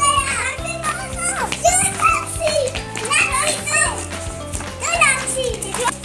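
Young children's high, excited cries and shouts as they play, over background music with sustained low notes.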